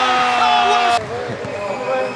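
A person's long drawn-out yell as a shot goes up, its pitch sinking slowly, cut off suddenly about a second in; quieter gym sound follows.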